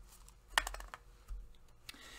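A few light, sharp clicks and taps of small objects being handled at a table, about four spread over two seconds.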